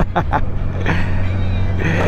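Touring motorcycle engine running steadily at a low cruising speed, with a low drone and some wind hiss.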